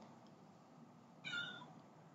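Near silence, broken once about a second and a quarter in by a short, faint, high-pitched cry lasting about a third of a second.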